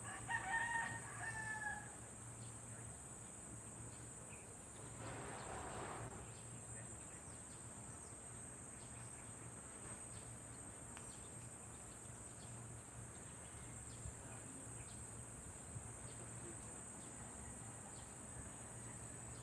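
A rooster crows once in the first two seconds, over a steady high-pitched drone of crickets. A brief rush of noise follows about five seconds in.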